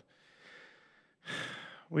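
A man breathing close to a microphone in a pause between phrases: a faint breath out, then a clearly audible in-breath starting about a second and a half in, just before he speaks again.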